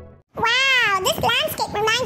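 Intro music fading out, then after a brief silence a high-pitched, child-like cartoon voice speaking with wide swoops in pitch.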